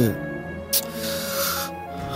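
Background score of sustained music tones. A breathy hiss starts about a second in and lasts about a second.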